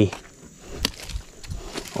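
Light handling ticks and rustles as a knife works at a thin woody stick, with one sharp click a little under a second in.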